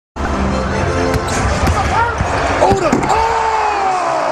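Basketball game court sound: a ball dribbled on a hardwood floor and sneakers squeaking as players cut and drive, over steady arena crowd noise.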